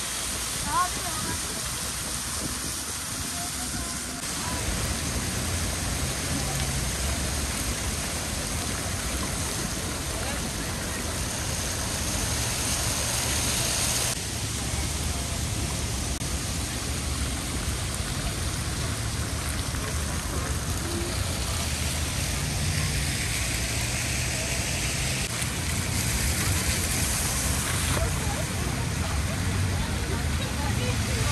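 Many fountain jets spraying and splashing into stone pools in a steady rush of water, with people's voices in the background.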